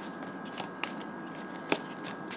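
Tarot cards being shuffled and handled: a light papery rustle with a few sharp snaps of card on card, the loudest near the end.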